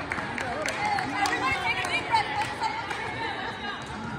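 Several voices chattering and calling out across a large, echoing gymnasium, overlapping one another, with a few short knocks.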